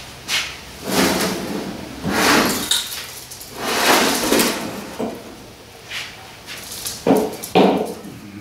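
Rusty steel wheelbarrow pan scraping and clanking on the bench as it is turned over and set down on its wheels. There are several drawn-out scrapes and knocks, and two sharper knocks near the end.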